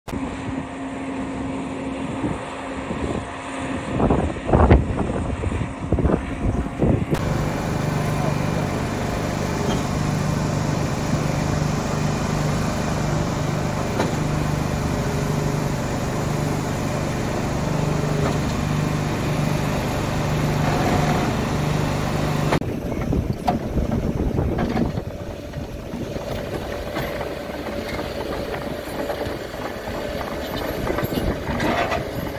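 Heavy construction machinery working, in three short scenes. First a mobile rock crusher fed by a tracked excavator runs, with several loud knocks of rock a few seconds in. Then a truck-mounted concrete pump runs with a steady, regularly pulsing hum, and after that a crawler bulldozer and a wheeled excavator move earth.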